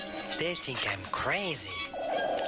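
A sampled cartoon voice making exaggerated wailing sounds, its pitch swooping up and falling back twice, with music underneath.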